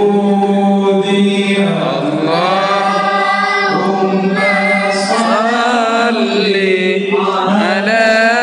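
Islamic devotional singing (sholawat): voices sing long, ornamented melodic lines over a steady held low note.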